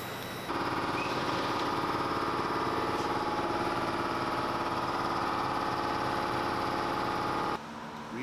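A steady machine running with a hum of several pitched tones, starting abruptly about half a second in and cutting off abruptly near the end.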